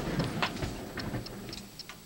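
A string of small irregular clicks and knocks: buttons being pressed on a portable CD player, with some handling noise.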